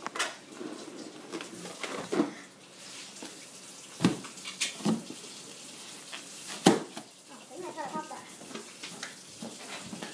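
Latex balloons being squashed and stamped on a carpeted floor: scuffling and rubber squeaks, with two sharp cracks about four seconds in and a little before seven seconds, and a few faint voice sounds.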